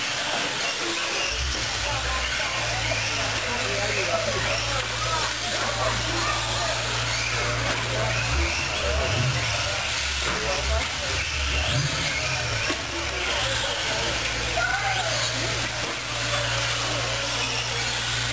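Electric 1/10-scale RC buggies and trucks racing on an off-road track: motors whining up and down in pitch over a steady wash of tyre and track noise, with voices in the background. A low steady hum comes in about a second in.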